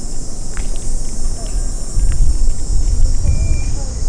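Steady high-pitched insect chorus over a low rumble that gets louder about two seconds in.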